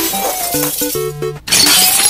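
Shattering sound effect, like breaking glass, twice: one burst at the start and a second about one and a half seconds in, over background music of short melodic notes.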